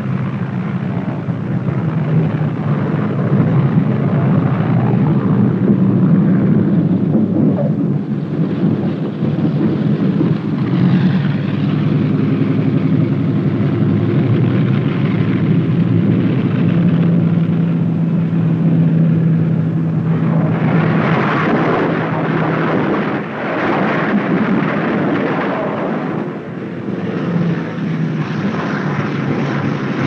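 Piston-engined propeller bombers (B-25 Mitchells, twin radial engines) droning steadily as they come in to land, with a louder rushing passage about two-thirds of the way through.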